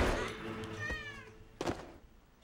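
A kitten meowing once, about a second in, just after the ringing of a gunshot dies away. A short thump comes near the end.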